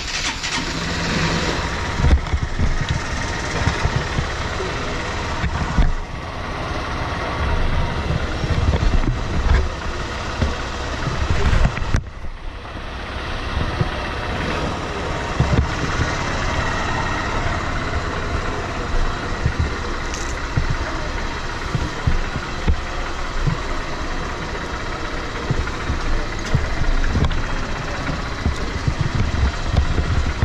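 Honda motorcycle engine idling steadily, with a brief dip about twelve seconds in.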